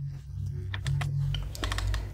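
Light clicks of a computer mouse's scroll wheel being turned: a few scattered clicks, then a quick run near the end, over low steady background music.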